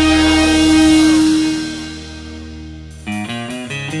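Rock guitar music: a held guitar chord rings out and fades over the first two seconds. About three seconds in, a picked guitar figure begins, its notes plucked one after another in quick succession.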